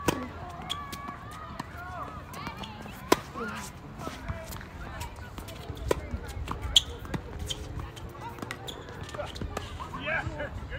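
Tennis rally on an outdoor hard court, opening with a serve: a series of sharp pops as the racket strings hit the ball and the ball bounces on the court, the loudest about three and seven seconds in.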